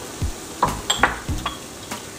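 A scattered series of light clicks and taps of a wooden spoon and utensils against a frying pan as ingredients are added and stirred, about seven in two seconds.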